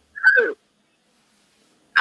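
A person's short laugh, falling in pitch and lasting about half a second near the start, then complete silence.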